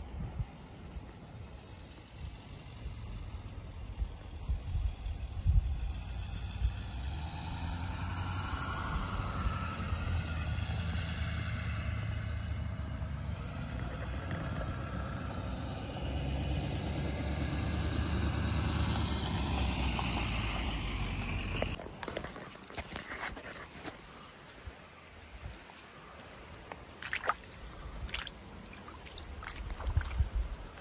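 A motor vehicle passing on the road, its sound building and fading over about twenty seconds, with wind rumbling on the unshielded microphone. It cuts off suddenly about two-thirds of the way in, leaving quieter outdoor background with a few light clicks near the end.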